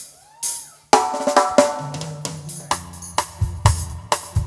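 A live school stage band starting its song: two sharp hits at the start, then about a second in the band comes in with a chord over a steady drum-kit beat, and a bass line enters near the two-second mark.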